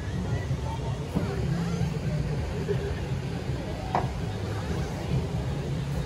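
A steady low rumble, with faint voices murmuring in the background and a brief tick about four seconds in.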